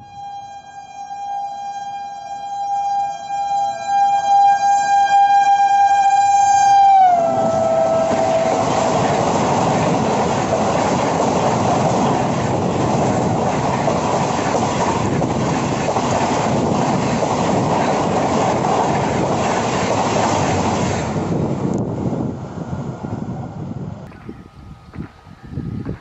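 Indian Railways WAP-7 electric locomotive sounding its horn in one long steady note, which drops in pitch about seven seconds in as it passes at about 130 km/h. The passenger coaches it hauls then rush past as a loud, dense rolling noise that fades away after about twenty seconds.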